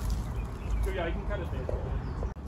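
Brief indistinct speech about a second in, over a steady low rumble.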